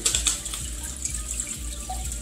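Steady trickle and splash of water from hang-on-back aquarium filters pouring back into the tank, over a low steady hum.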